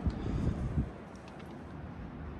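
A short click as the car door swings open, followed by low wind rumble on the microphone that fades after about a second to a faint, steady outdoor background.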